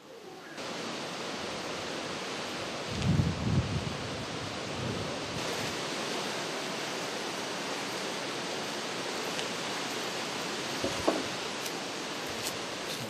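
Steady outdoor rushing noise, with a low rumble about three seconds in and a short knock about a second before the end.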